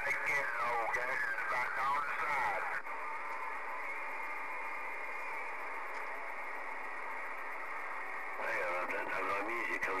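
Over a Galaxy CB radio's speaker, a distant station's voice comes through garbled and hard to make out for about three seconds. It then gives way to steady band hiss for several seconds, and another received voice comes in near the end.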